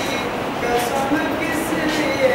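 A teenage boy singing solo and unaccompanied, in long held notes that slide slowly in pitch. He pauses briefly and resumes about half a second in.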